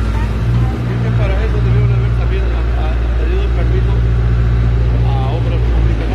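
Several people talking at once, overlapping and indistinct, over a loud, steady low rumble.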